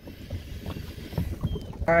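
Light knocks and handling noise in a small boat, over water lapping at the hull and some wind on the microphone.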